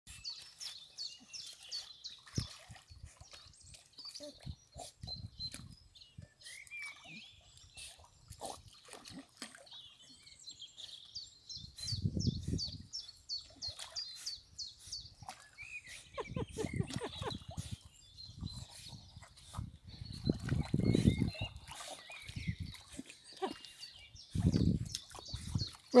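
Small birds singing, with quick repeated high chirps all the way through. A few short, louder low sounds come and go in the second half.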